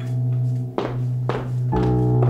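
Dramatic background score: a sustained low drone under held chords, struck by two heavy thuds with a ringing tail about a second in, then a new chord entering near the end.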